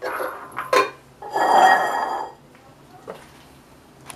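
Stainless steel saucepan and wooden spoon handled on a gas stove: a sharp knock just under a second in, then a ringing metallic scrape lasting about a second.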